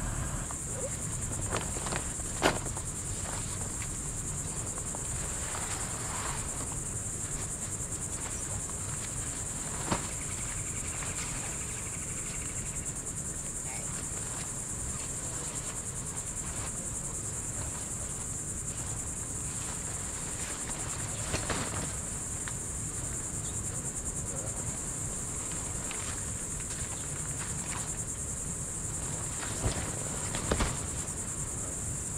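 Steady, high-pitched insect chorus droning throughout, with a few sharp knocks about 2 s, 10 s and 21 s in as a hub tent's frame is popped up and handled.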